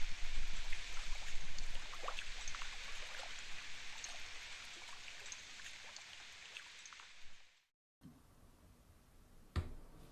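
A trickling, dripping water-like sound from a film trailer's soundtrack, fading out gradually and cutting to silence about seven and a half seconds in. After that there is faint room tone and a single click near the end.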